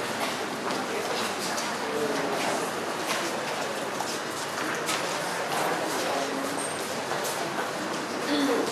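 Footsteps of a line of choir singers walking onto a hard stage floor, shoe heels clicking irregularly, over a steady murmur of audience chatter.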